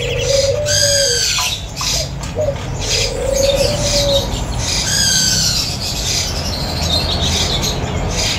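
Black crow calling, with no words: a low wavering note at the start and again about three seconds in, and two short high calls that arch up and down about one and five seconds in. A steady low hum runs beneath.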